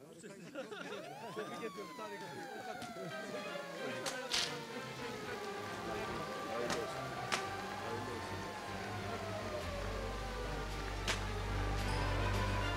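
Siren-like sweeping tones played as a ceremonial sound effect, rising quickly and then falling slowly, with a second slower rise and fall, over a few sharp cracks. Music with a deep bass comes in near the end.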